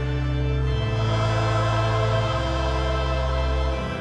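Church hymn music of slow, held chords that change about every one and a half seconds.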